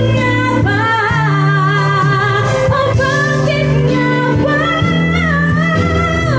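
Live band music: a woman singing a melody with gliding, wavering notes into a microphone, accompanied by acoustic guitar and keyboard with sustained low notes.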